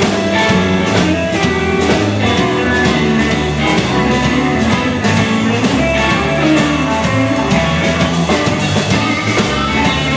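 Live blues band playing an instrumental passage: electric guitars over a drum kit keeping a steady beat.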